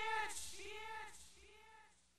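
The end of a hip-hop track: a short pitched vocal sound repeats as an echo about every 0.6 s, each repeat rising and falling in pitch and fainter than the last, until it fades out.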